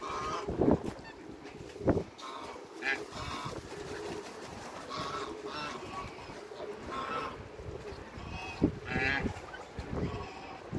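Geese honking in short calls, one every second or so, with a couple of louder low bumps in the first two seconds.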